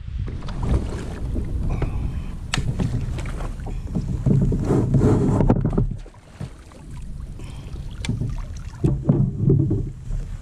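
Wind rumbling on a kayak-mounted camera microphone over gear-handling noise on a fishing kayak, with scattered clicks and knocks, easing off briefly a little past the middle.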